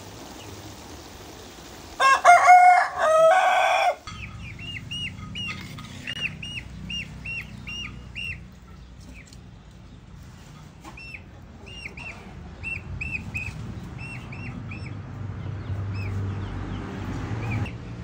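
A rooster crowing loudly once, about two seconds in, then a bird giving short high chirps, about two a second, for some ten seconds.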